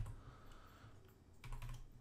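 A few faint computer keyboard keystrokes, mostly in the second half, typing code.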